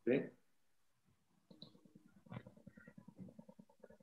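A short, loud vocal sound right at the start, then faint, muffled speech coming over a video-call line from about a second and a half in.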